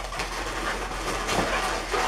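Inflated latex twisting balloons rubbing and squeaking against each other as a balloon sculpture's head is handled and rearranged, an irregular scratchy rubbing.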